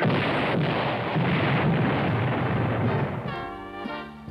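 Cartoon sound effect of a cannon firing: a sudden blast that rumbles on for about three seconds, swelling again about a second in, then fading as music comes in near the end.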